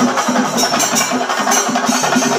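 Singari melam: chenda drums beaten in a fast, steady rhythm with cymbals ringing over them.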